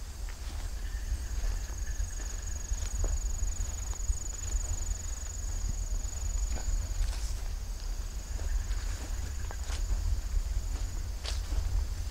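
Footsteps on grass with the low rumble of the handheld microphone moving, while an insect trills steadily at a high pitch.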